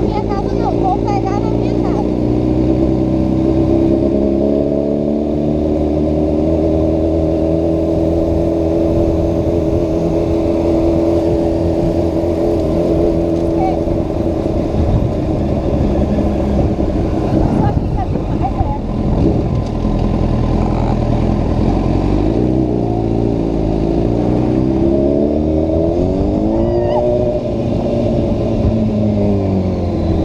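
Honda CBR1000RR Fireblade's inline-four engine heard from the rider's position while riding, with a steady note for the first half. Near the end the pitch rises and falls several times as the throttle is opened and closed.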